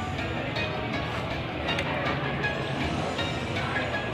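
Slot machine's free-game bonus music with chiming tones as a win is counted up on the meter, over a dense, steady din.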